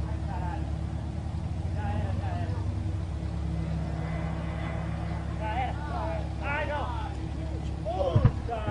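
A steady low engine drone, with people's voices calling out excitedly several times, most densely about five and a half to seven seconds in.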